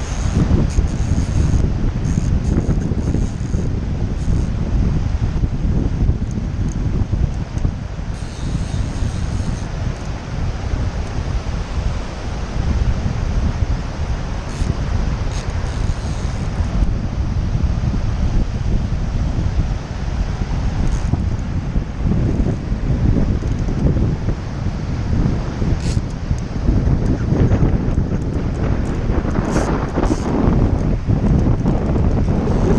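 Strong wind buffeting the camera microphone in a steady low rumble, over the rush of a fast-flowing river.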